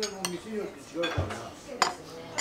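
Metal serving fork and spoon clinking against ceramic plates as food is dished out, a few separate clinks with the sharpest near the end.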